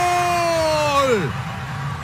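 A television commentator's long, drawn-out "Goal!" call, held on one pitch and then falling away and ending a little over a second in.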